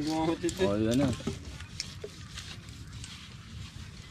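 A voice briefly in the first second, then faint rustling and small clicks of hands working a hook and monofilament fishing line through a small tuna used as bait.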